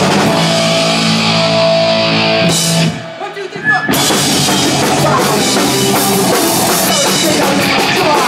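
Hardcore punk band playing live: electric guitars, bass and drum kit. About three seconds in the band stops for about a second, then comes crashing back in together.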